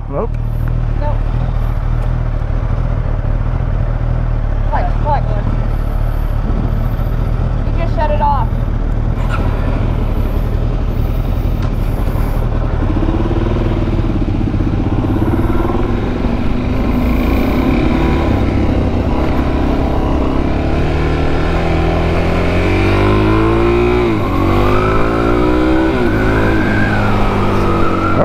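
Suzuki DR-Z400SM's 398cc liquid-cooled single-cylinder engine running at low revs at first. From about halfway it accelerates, the revs climbing and dropping with each upshift.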